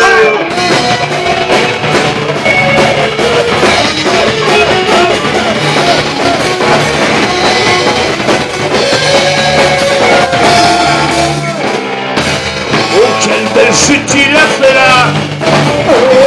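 Live rock band playing at full volume: electric guitars and a drum kit, with a singer at the microphone.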